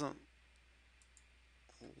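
A few faint computer mouse clicks against quiet room tone, between brief bits of speech at the start and near the end.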